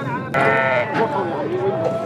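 A hybrid Shami (Damascus) goat bleats once, a short bleat starting about a third of a second in and lasting about half a second.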